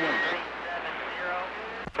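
CB radio receiver playing a weak, noisy transmission: a faint voice breaking up under static, with a short steady whistle near the start. The signal drops out briefly near the end as a stronger station keys up.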